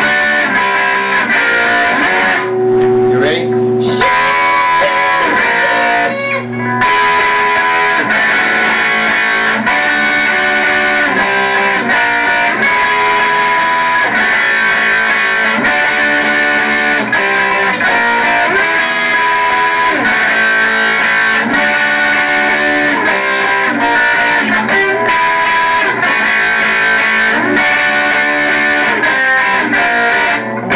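Electric guitar playing chords and single notes that change continuously.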